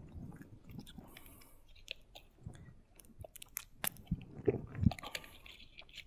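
Small clicks and soft low thumps picked up close to a clip-on lapel microphone as the wearer moves, the loudest thumps coming about four and a half to five seconds in.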